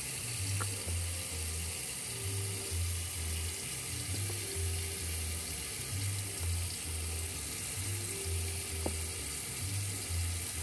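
Water running steadily from a kitchen tap into a sink while juicer parts are rinsed, with music playing in the background, its low bass notes pulsing in an even beat.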